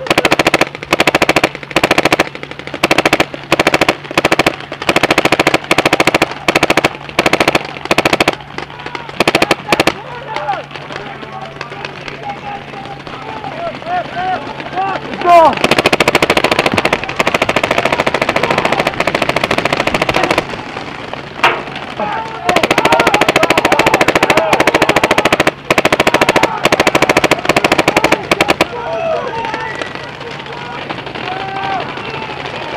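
Paintball marker fired close to the microphone in rapid strings of shots: short bursts for the first several seconds, then longer unbroken strings from about the middle on. Players shout between the strings.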